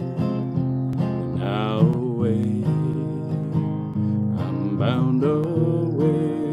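Acoustic guitar strummed in a slow folk accompaniment, with a man's voice holding and bending a few sung notes over it.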